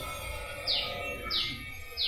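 A small bird chirping in the background: short, high chirps that fall in pitch, a few in a row, less than a second apart.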